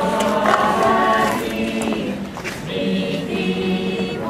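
A Lucia procession choir of young, mostly girls' voices singing together, with held notes that change every second or so.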